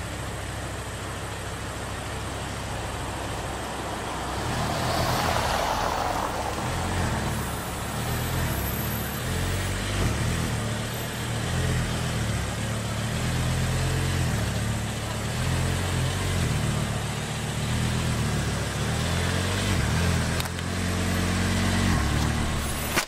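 Audi R8 engine running at low speed as the car reverses and manoeuvres out of a tight parking space. Its low note grows louder about four seconds in and then rises and falls with the throttle.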